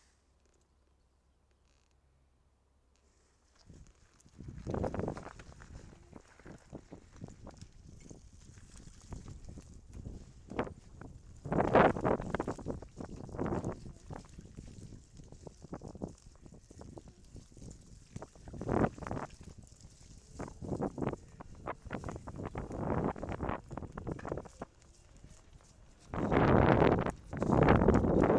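Near silence for the first few seconds, then irregular knocking, rattling and rumbling noise of a bicycle ridden over a rough, muddy dirt track, loudest in bursts near the middle and near the end.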